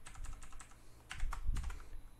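Typing on a computer keyboard: two short runs of key clicks, one near the start and a longer one in the second half.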